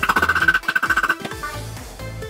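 Quick metallic taps of a small hammer against the inside of a stainless steel marine horn's trumpet bell, which stop a little over a second in, over background music.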